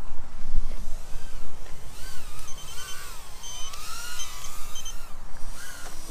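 Small brushless FPV micro quadcopter (Eachine Novice-i) whining as it flies in to land, the pitch rising and falling with the throttle, then stopping about five seconds in.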